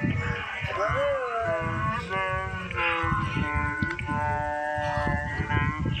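A jumble of cartoon character voices and music played over one another in several layers at different pitches, with long gliding tones running through it.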